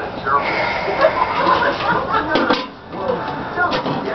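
Indistinct voices: talk or babble too unclear to make out as words, with a dip near three seconds in.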